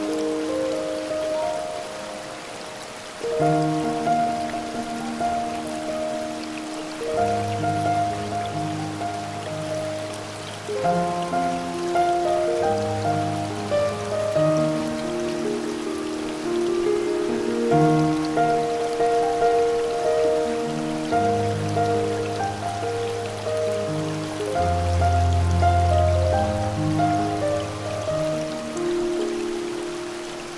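Slow, soft piano music in held chords over a steady rush of falling water from a waterfall.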